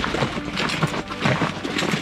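Footsteps on a dirt and gravel hiking trail, a few short scuffs and thuds each second at a walking pace.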